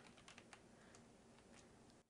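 Faint computer keyboard typing: a scatter of light keystroke clicks.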